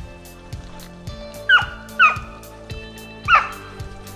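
A dog barking three short, high yelps, each sliding down in pitch; the first two come close together and the third about a second later. Background music with a steady beat plays under them.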